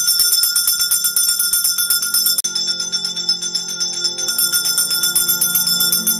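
Altar bells rung rapidly and continuously at the elevation of the host, marking the consecration. Low sustained musical notes sound underneath.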